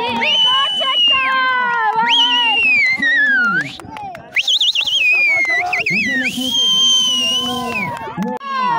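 Several high voices calling out in long, held tones. Some of the notes waver and one slides steadily down, with a brief lull about halfway through.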